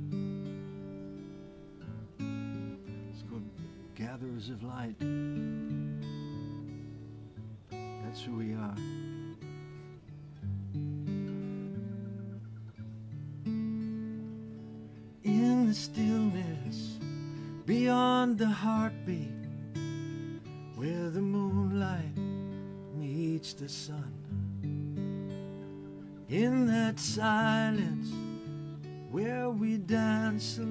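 Slow acoustic guitar, strummed and plucked, playing a song intro. Over it runs a wordless melody line with vibrato in phrases of about a second, heard a few times early on and more steadily from about halfway through.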